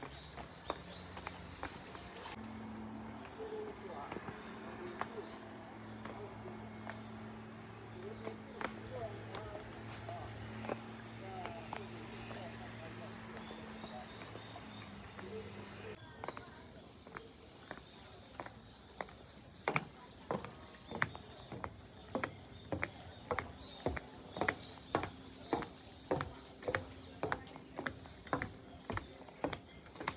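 Cicadas singing in a steady, high-pitched drone. From a little past halfway, footsteps tap along evenly at about two a second.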